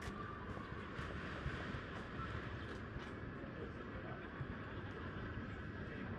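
Footsteps on a paved street, about two steps a second, over a steady low rumble of outdoor city noise.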